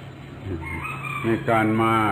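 A rooster crowing in the background, one call of under a second that fades as a man's voice starts speaking again.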